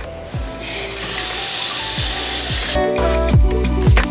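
Bathroom sink tap running, filling a drinking glass, a steady hiss of water from about a second in until near three seconds. Background music with a regular low beat runs underneath and comes to the fore near the end.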